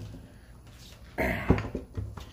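A man coughs briefly about a second in, and a wet oak log knocks sharply against a plywood board as it is set down, with a lighter knock near the end.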